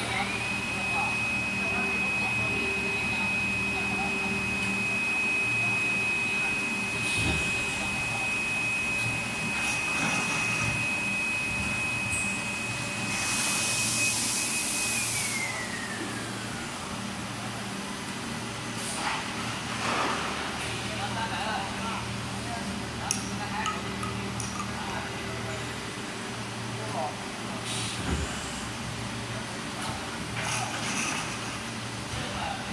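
Injection moulding machine running with a low hum and a steady high whine that slides down in pitch and fades about 15 seconds in, as a motor winding down would. A short burst of hissing comes just before the whine falls, and a few sharp knocks follow in the second half.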